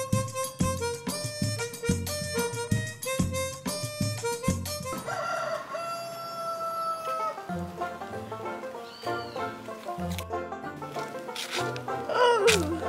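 Upbeat background music with a steady percussive beat, then a rooster crowing once in one long held call about five seconds in, followed by lighter music.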